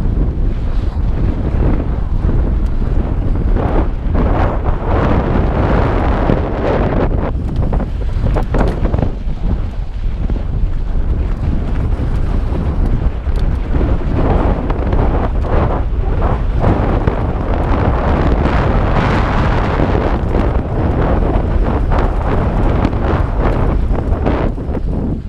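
Wind buffeting the camera microphone at riding speed, over a mountain bike's tyres rolling on loose, freshly cut dirt and the bike rattling over bumps in many short knocks.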